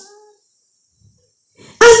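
A pause in a woman's amplified preaching: her voice trails off, about a second of near silence follows, and she starts speaking again near the end.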